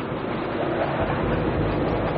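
Steady jet engine noise from a low-flying F/A-18 Hornet, with a deeper rumble coming in about a second in.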